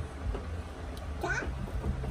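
A short, high-pitched, meow-like cry about a second and a quarter in, rising and then falling in pitch, over a steady low hum.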